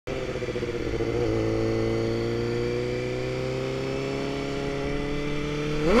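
Suzuki GSX-R600 inline-four engine running in first gear, its pitch rising slowly and steadily as the bike gains speed. Just before the end it revs sharply up and drops back as the throttle is snapped open to lift the front wheel for a wheelie.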